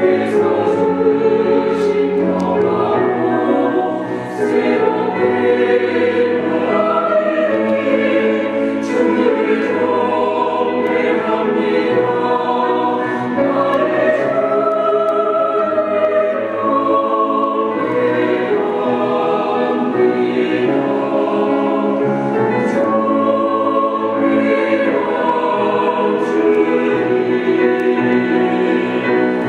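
Mixed choir of men's and women's voices singing a sacred choral anthem in sustained, continuous phrases.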